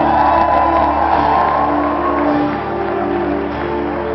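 Live band playing an instrumental passage of a romantic ballad: held chords with a higher melody line over them, without the lead vocal.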